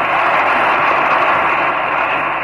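A crowd applauding and cheering in a pause of a public speech, heard as a loud, steady rush through an old, narrow-band recording.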